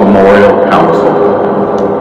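Military band holding a sustained chord of low tones, with a brief trace of a man's voice in the first second.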